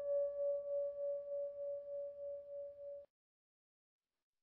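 A single bell-like tone rings on and slowly fades, with a steady wavering of about three pulses a second. It cuts off abruptly about three seconds in, leaving silence.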